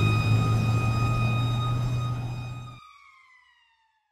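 A siren-like tone holding one steady pitch, then sliding down in pitch and fading away. A low steady rumble under it cuts off suddenly shortly before the end of the glide.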